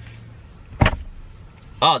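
A single sharp plastic click: the new shift knob's wiring connector snapping into place on the gear lever.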